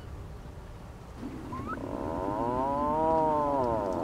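Atlantic puffin giving one long call that starts about a second in and rises and then falls in pitch over roughly two and a half seconds, with a short upward note just before it.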